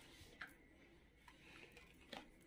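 Near silence: room tone with two faint, brief ticks, one about half a second in and one just past a second.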